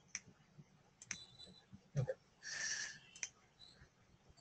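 A few faint computer mouse clicks, spread out, with a short hiss about two and a half seconds in.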